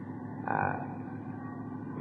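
A pause in a man's talk on an old lecture recording: steady background hiss and room noise, with a short hesitant 'uh' about half a second in.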